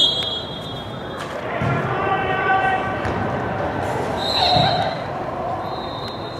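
Voices calling out across an indoor soccer hall, echoing off the walls, with a few dull thuds of the ball being kicked or bounced on the turf. High steady whistle-like tones come near the start, about two-thirds of the way in, and again at the end.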